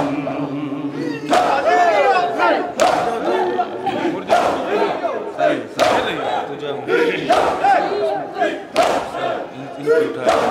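A crowd of mourners doing matam, striking their chests with their hands in unison about every one and a half seconds, with many men's voices shouting and chanting between the strikes.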